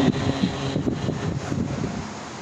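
Steady rushing noise of ventilation fans in a large hall, picked up by the lecture microphone, with a few faint ticks about a second in.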